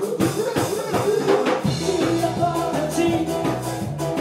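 A live rock band playing: drum kit keeping a steady beat under bass guitar, electric guitar and keyboard.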